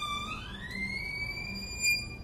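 Solo violin, softly, sliding up about an octave in the first second and holding a thin high note.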